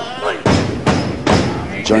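Heavy thuds of wrestlers' bodies and boots landing on a wrestling ring's canvas-covered boards. There are two sharp thuds under a second apart near the middle, with a lighter knock between them.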